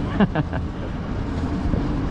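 A man's short laugh near the start, over a steady low rumble of outdoor background noise.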